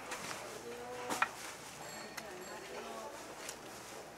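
Quiet eating sounds: a few sharp clicks of a spoon and chopsticks against a small paper bowl, the loudest about a second in, with a faint murmured voice.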